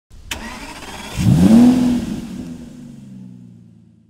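A car engine sound effect: a sharp click, then the engine revs up in one rising sweep, loudest about a second and a half in, and slowly fades away.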